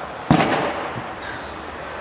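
A pitched baseball striking at the far end of an indoor bullpen: one sharp pop about a third of a second in, with a short echo trailing after it.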